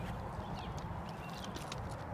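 Quiet outdoor background: a steady low rumble under faint noise, with a few faint high chirps around the middle.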